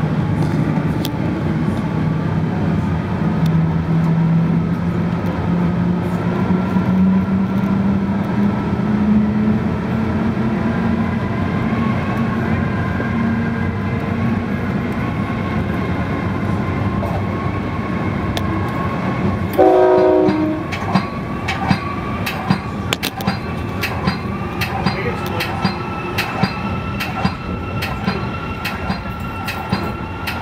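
Metra commuter train running at speed, heard from the cab car: a steady rumble with a low hum that slowly rises in pitch over the first half. About two-thirds of the way through, a brief horn blast is the loudest moment, followed by rapid clicking of the wheels over rail joints.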